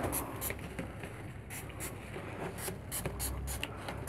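Hand spray bottle misting a group of pigeon squabs in a quick series of short spray bursts, about two or three a second, with faint rustling of the birds being handled.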